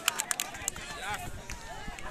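Crowd of spectators: a few scattered handclaps in the first half-second or so, then many men's voices talking over one another.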